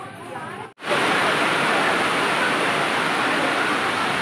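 Heavy rain pouring, a loud, even rush that starts abruptly after a brief dropout about a second in, with voices under it.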